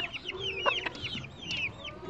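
Chickens calling: a string of short high chirps, several a second, with a few low clucks in the first second.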